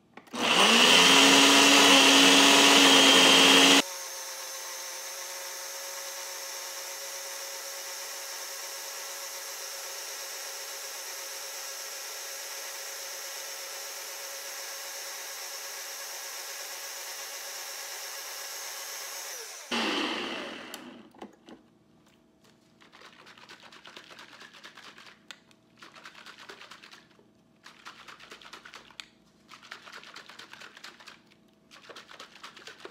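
Single-serve personal blender motor starting up and running on a garlic, onion, ginger, honey and lemon-juice mix. It is loud for the first few seconds, then abruptly drops to a much quieter, steady run with a constant hum for about sixteen seconds before winding down. Afterwards the blender cup is shaken by hand in several short rattling bursts to mix in the honey.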